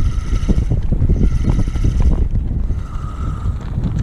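Wind buffeting the microphone on an open boat, a loud, gusty low rumble, with water lapping and slapping against the hull. A faint steady high whine comes and goes over it.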